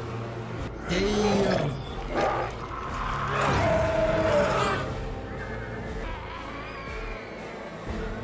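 A man's grunts and growls turning monstrous, with two loud roaring calls: a short arching one about a second in and a longer held one around the middle, then quieter. It is a character's voice during a drug-induced transformation into a monster in an animated series.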